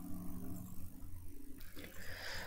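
Quiet room tone with a low, steady electrical hum and faint held tones.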